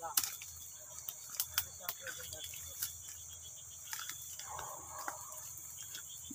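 Steady high-pitched chorus of crickets at night, with scattered light clicks and rustles from movement through the undergrowth.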